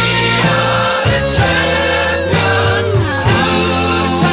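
Background music: a song with singing voices over steady bass and a beat.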